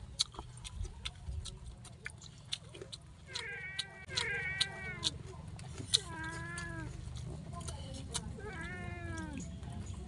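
A cat meowing four times, each call under a second long with a pitch that rises and falls, starting about three seconds in. Close, sharp clicks of chewing and lip-smacking run underneath.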